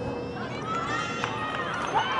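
High-pitched girls' voices shouting and calling across an outdoor soccer field, several calls overlapping over a steady murmur of background noise, with a brief sharp sound near the end.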